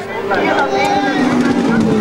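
Indistinct voices talking over a steady engine hum.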